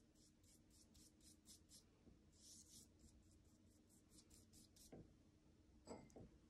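Faint, quick strokes of a wet paintbrush across paper, several soft swishes a second, laying down a watercolour wash, with two soft taps near the end.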